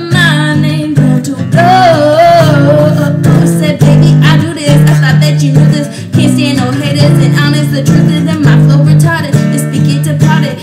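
Acoustic guitar strummed in a steady rhythm while a woman sings along.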